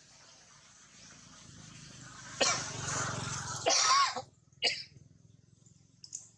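Three harsh, cough-like bursts: a long one about two and a half seconds in, a second that ends in a short squeak rising and falling in pitch, and a brief last one just before the end.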